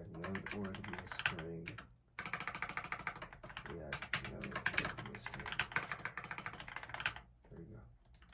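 Rapid typing on a computer keyboard: a quick, dense run of key clicks starting about two seconds in and stopping shortly before the end.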